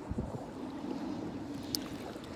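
Wind buffeting a phone's microphone: a rough, uneven low rumble, with a short click near the end.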